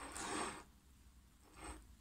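Faint handling sounds of a porcelain coffee cup being moved and turned in the hand over its saucer: a short scraping rub at the start and a briefer one near the end.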